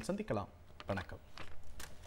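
A man's voice speaking softly, then a series of short, sharp clicks in the quieter stretch after it.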